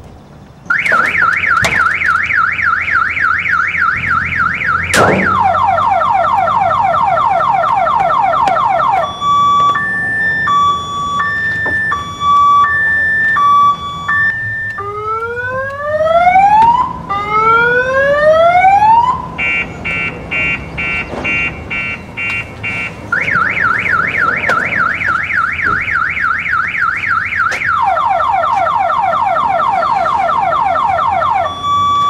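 Electronic car alarm siren going off under a second in and cycling through its tones: a fast warble, a repeated falling sweep, a two-tone high-low alternation, slow rising whoops and rapid chirps, then back to the warble and falling sweeps. A single sharp click sounds about five seconds in.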